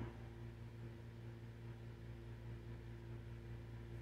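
Quiet room tone: a steady low hum with a faint hiss, unchanging throughout.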